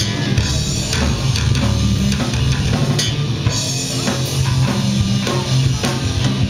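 A rock band playing live: drum kit with steady strikes over electric guitar and a heavy, sustained low bass line.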